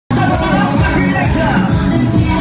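Loud dance music from a DJ set in a club, with a steady bass line, cutting in abruptly right at the start.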